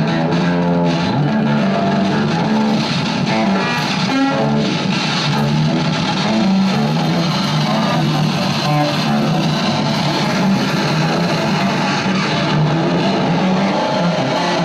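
Electric guitar played through effects together with electronic noise in a free improvisation: a loud, dense, continuous wash with sustained pitches that shift over a noisy haze.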